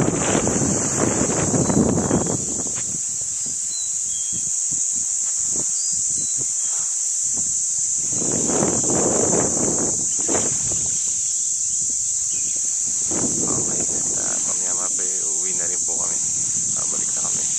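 Steady, high-pitched insect buzz running without a break, with a rumble of wind on the microphone in the first two seconds or so.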